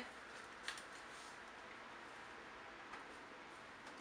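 Near silence: faint room tone, with a small click about two thirds of a second in and a fainter one near the end.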